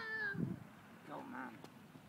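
A high-pitched voice calling out, its pitch falling steadily as it trails off about half a second in, then a softer, wavering call about a second later.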